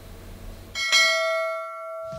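Faint workshop room noise, then a single bell strike about a second in that rings on with several clear steady tones and slowly fades. The background cuts out at the strike, as with an edited-in bell sound effect.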